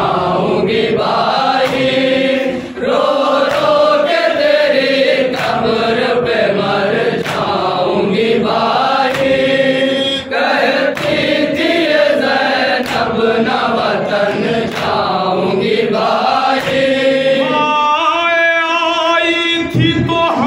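A group of men chanting a noha, a Shia lament, in unison, with a sharp slap about once a second, typical of matam chest-beating. Near the end a single male voice takes the lead, singing a long, higher line.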